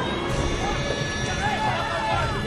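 Film soundtrack mix: music over a dense low rumble, with short rising-and-falling shouting voices on top.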